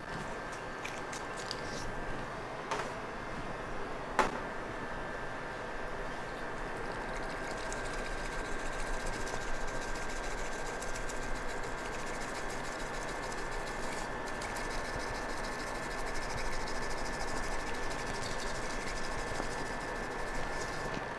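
Bamboo matcha whisk (chasen) brushing rapidly against a ceramic bowl as matcha is whisked, a fast scratchy swishing from about eight seconds in. Before that come two sharp knocks, the second louder, over a faint steady hum.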